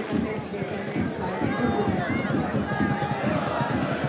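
Football match sound in a sparsely filled stadium: several overlapping shouts and calls from players and spectators over a steady low crowd murmur.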